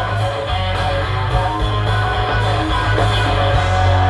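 Live rock band of electric guitar, bass guitar and drums playing an instrumental passage between sung lines, with a strong, sustained low bass.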